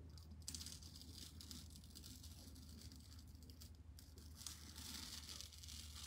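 Faint crinkling and peeling of a sticky plastic mesh stencil (a Chalk Couture transfer) being lifted off a chalk-pasted wooden board, a little louder in the last second or so.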